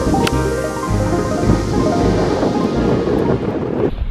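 Background music with a steady beat, with a single sharp click about a quarter of a second in. The music cuts off near the end.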